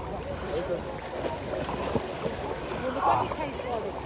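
Several people's voices chattering in the background, with small waves lapping at a microphone held at the water's surface.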